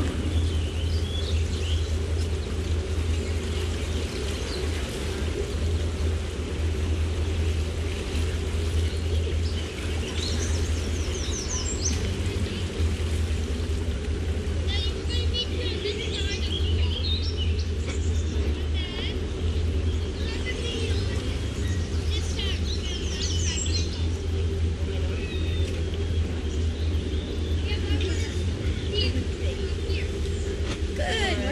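A boat's MerCruiser 7.4-litre V8 inboard engine idling with a steady low rumble, moving the boat slowly forward. Songbirds chirp over it through the middle stretch.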